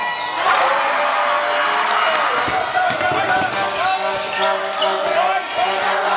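Basketball bouncing on a gym's hardwood floor, a few bounces around the middle, under the voices of players and crowd echoing in the hall.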